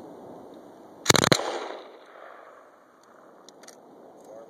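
M249 light machine gun firing a short three-round burst of 5.56 mm about a second in, the shots ringing out and fading over the next half second or so.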